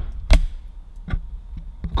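A few sharp, separate clicks and light knocks, the loudest about a third of a second in, from the camera and the car's trim being handled.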